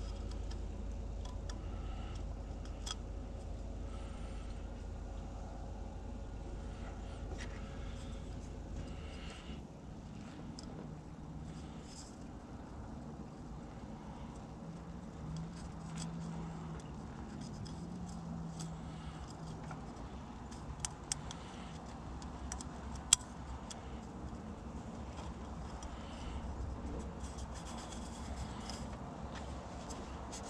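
Small handling sounds, faint clicks and rubbing, as an oil filter housing cap is wiped with a cloth and its gasket is swapped. They sit over a low steady rumble that eases after about nine seconds. A couple of sharper clicks come about two-thirds of the way through.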